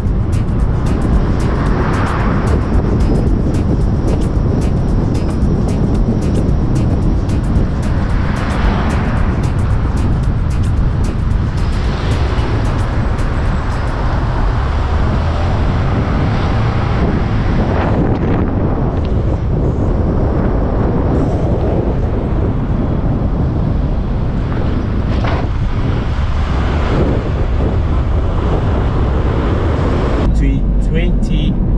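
Car driving along a town road: steady engine and tyre noise with a low wind rumble on the microphone. The noise swells every few seconds as other traffic passes.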